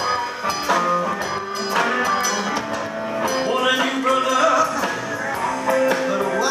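A blues-rock band playing live: electric guitars over bass guitar and drums, with notes that slide up and down in pitch.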